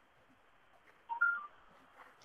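Three short beeps at different pitches in quick succession, about a second in, over faint steady background hiss.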